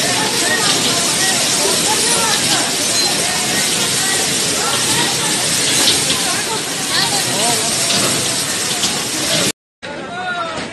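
Several men's voices calling and chattering over a loud, steady hiss; the sound cuts out for a moment near the end.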